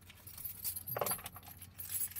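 A bunch of car keys on a key ring jingling and clinking as they are handled to find the ignition key.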